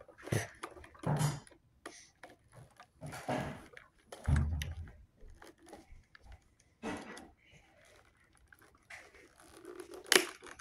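Packing tape being picked at and pulled off toy packaging in short, irregular scraping rips and rustles, with a dull thump about four and a half seconds in.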